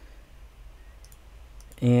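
A few faint computer clicks over a low steady hum, with a man starting to speak near the end.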